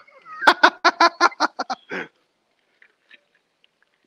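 Laughter: a quick run of about nine ha-ha pulses over a second and a half.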